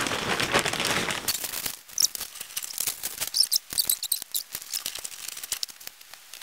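Plastic shopping bag rustling and crinkling as it is handled, dense for the first second and a half, then thinning to scattered crackles and clicks.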